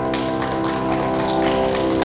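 A grand piano's last chord ringing on while a small audience breaks into scattered clapping just after it.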